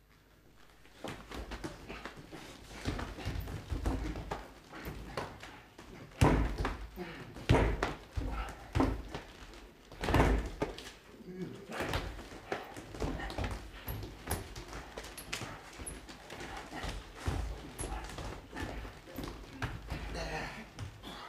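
Two actors grappling in a staged mock fight: wordless grunting and straining voices with repeated thumps and stamps of feet and bodies on the wooden stage floor, starting about a second in, the sharpest thuds about six, seven and a half and ten seconds in.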